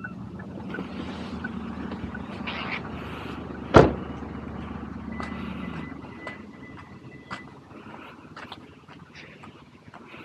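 A car engine running steadily, with a car door shutting in a single loud thump about four seconds in. The engine fades out after about six seconds, leaving light footsteps on pavement.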